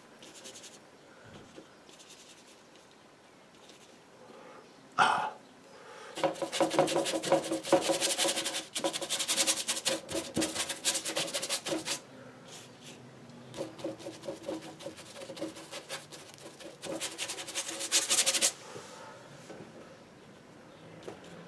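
Bristle brush scrubbing acrylic paint and gel medium across paper on a board, in two long spells of quick strokes. A single sharp knock comes about five seconds in.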